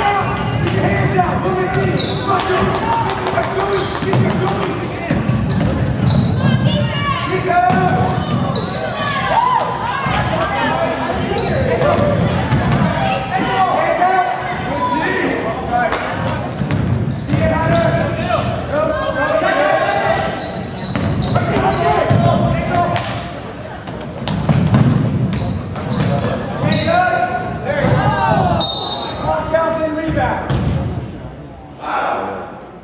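A basketball bouncing on a hardwood gym court, with people shouting throughout, echoing in a large gymnasium.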